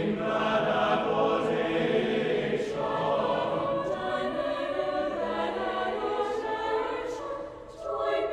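Mixed university choir singing sustained chords, with a brief break between phrases near the end.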